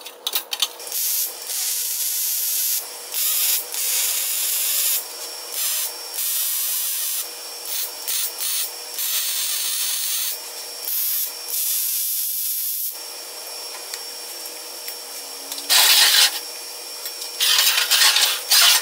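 Electric arc welding on a steel square-tube frame: a run of hissing welds, each lasting from a fraction of a second to a couple of seconds with short pauses between. Near the end come two brief, louder, harsher bursts.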